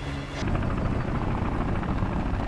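Several helicopters flying over in a TV soundtrack, their rotors beating steadily, coming in about half a second in after a brief low tone ends.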